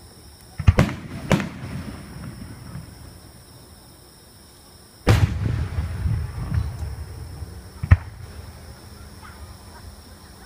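Aerial firework shells bursting overhead. Two sharp bangs come about half a second apart, about a second in. A louder burst about five seconds in is followed by a couple of seconds of rumbling echo, and one more sharp bang comes near the end.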